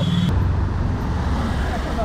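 Steady low rumble of city road traffic, with the handheld camera being handled: the sound shifts abruptly a moment in.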